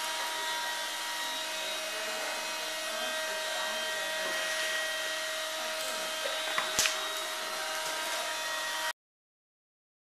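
Steady whirring hum of room noise with a few constant tones in it. A single sharp click comes about seven seconds in, and the sound cuts off abruptly to silence near the end.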